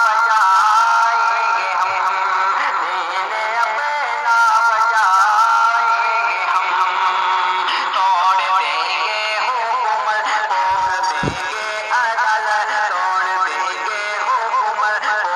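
A naat, an Urdu/Hindi Islamic devotional song, sung by a single voice that wavers and glides through long held notes.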